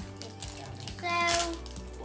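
Thin plastic packaging crinkling and crackling in small clicks as children handle and tear open small sachets by hand. A child's voice says a drawn-out "So" about a second in.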